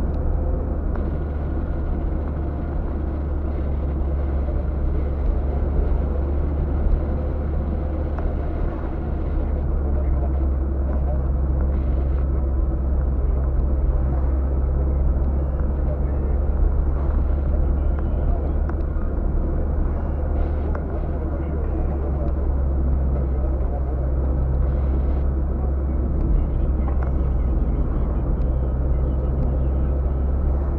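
Interior noise of a moving car picked up by a dashcam: a steady low drone of engine and tyres on the road at cruising speed.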